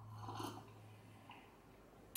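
A faint sip and swallow of coffee from a mug, about half a second in.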